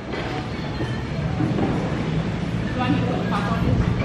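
A steady low rumble with indistinct voices talking faintly behind it.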